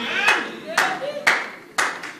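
About four slow hand claps, roughly half a second apart, ringing briefly in the hall, with a faint voice between them.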